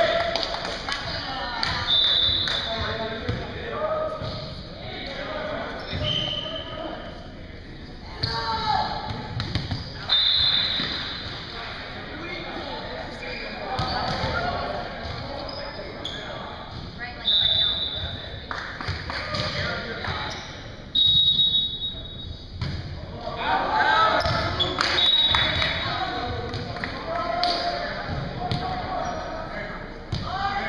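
A volleyball being hit and bouncing on a hardwood gym floor, heard as irregular sharp knocks that echo in a large hall. Short high squeaks come every few seconds, typical of sneakers on the court, and players' voices run underneath.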